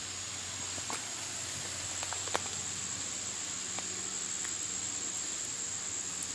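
Quiet garden ambience: a steady thin high-pitched whine over a soft hiss, with a few faint clicks and rustles as a tomato plant's stems and leaves are handled.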